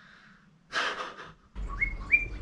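A single audible breath out, about two-thirds of a second in. Near the end, after a cut, a low rumble and a run of short, high, chirping whistle notes begin.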